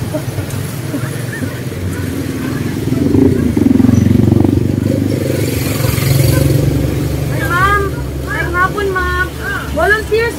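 A motor vehicle's engine passing, its low rumble swelling to loudest a few seconds in and then fading. Voices come in over it near the end.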